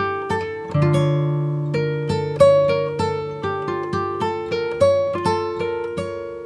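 Background music played on a plucked guitar-like instrument: a steady run of picked notes, several a second, each ringing and fading.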